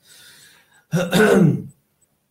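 A person's brief non-speech vocal sound: a soft breathy exhale, then a louder voiced sound lasting under a second, starting about a second in.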